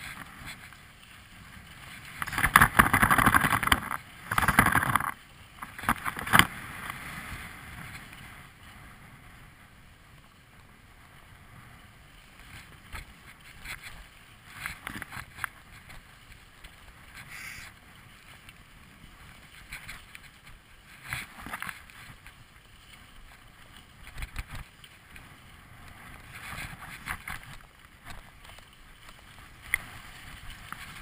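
Skis hissing and scraping over packed snow on a downhill run, with wind rushing over the camera microphone. The loudest rush comes a couple of seconds in, followed by a sharp click, then a quieter steady hiss with brief flare-ups.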